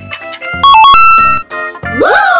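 Background music with a steady beat, then about half a second in a loud, bright electronic jingle of quickly stepping notes, like a ringtone, that holds a high note for under a second before cutting off. It is an answer-reveal sound effect, as the red circle marking the difference appears.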